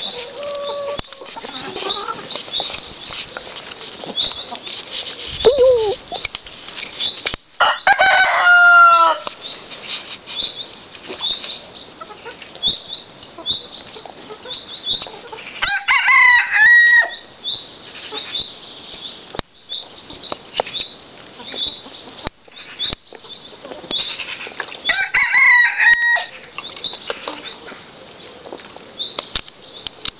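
A rooster crowing three times, several seconds apart, over hens clucking. A short high chirp repeats steadily throughout.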